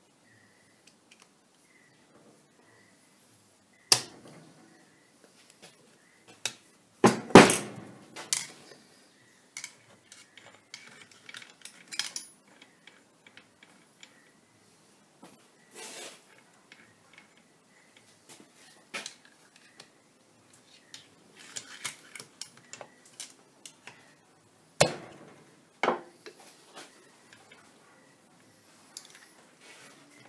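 Metal parts clinking and knocking during hand assembly of a lathe apron gearbox: gears, shafts and small clips being handled and set into the housing. The knocks are scattered and irregular, the loudest about four seconds in, around seven to eight seconds, and near twenty-five seconds.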